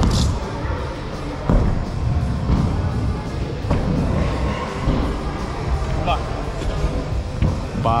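Stunt scooter wheels rolling over wooden skatepark ramps, with a couple of sharp knocks from the deck and wheels hitting the ramp, about one and a half and three and a half seconds in, over background music.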